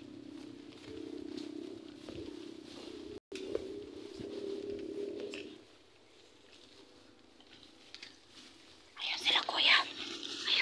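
A person whispering quietly, with a louder burst of whispered sound about a second before the end.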